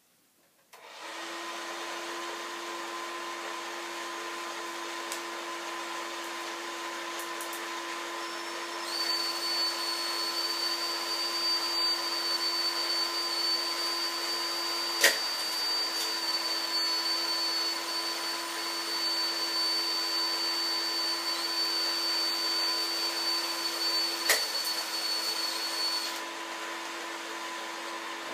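Power drill running steadily, driving the lift of a K'nex roller coaster. A higher whine joins about a third of the way in and stops near the end, with two sharp clacks along the way.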